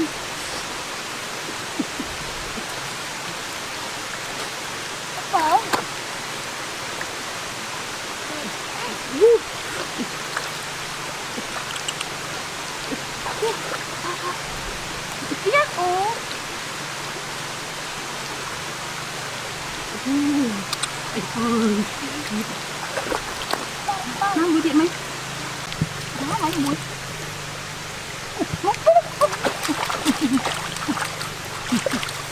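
Shallow rocky stream flowing steadily over stones, with short snatches of voices now and then.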